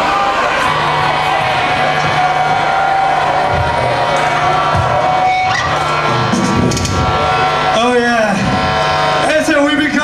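Black metal band playing live in a hall: loud distorted guitars and bass holding long sustained notes, with a steady held tone through the first half. Near the end a man's harsh voice comes in over the PA.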